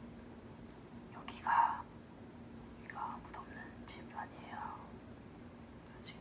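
Quiet whispered speech in a few short phrases, the loudest about a second and a half in, over a faint steady hum.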